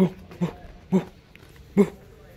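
A dog barking four times in short, single barks, unevenly spaced.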